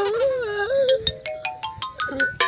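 Comedic background music with a synthesized, ringtone-like melody; in the second half it plays a quick run of short notes stepping upward in pitch.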